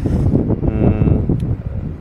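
Wind buffeting a clip-on lapel microphone: a loud, uneven low rumble, with a brief held low hum in the middle.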